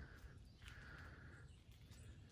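Near silence: faint outdoor ambience, with a faint high-pitched sound lasting about a second in the middle.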